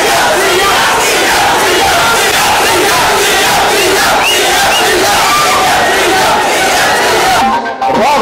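A large crowd of young men shouting and cheering together, many voices overlapping, with a brief break in the sound just before the end.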